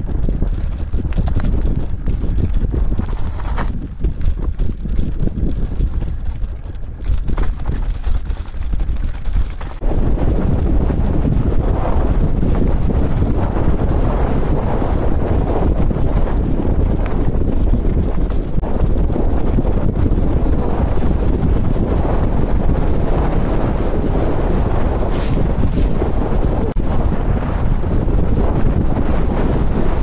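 Wind buffeting a camera microphone: a loud, even rushing rumble with no clear pitch. It jumps louder and steadier about ten seconds in.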